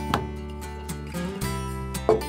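Background music led by a strummed acoustic guitar, with a chord change about a second and a half in.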